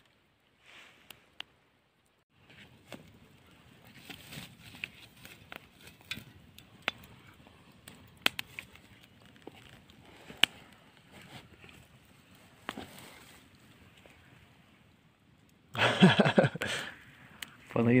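Faint rustling with scattered sharp clicks and knocks, as someone moves about over dry grass at a riverside camp. Near the end a man's voice cuts in loudly.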